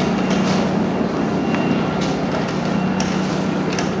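Light propeller aircraft engine droning at a steady pitch, heard from inside the cabin.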